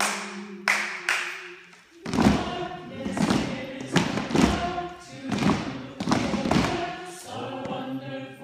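Three sharp hand claps, then a group singing a refrain together over steady rhythmic thumps about twice a second.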